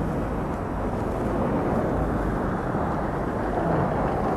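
Steady low rumble of vehicle engines and traffic, heard muffled from inside a car.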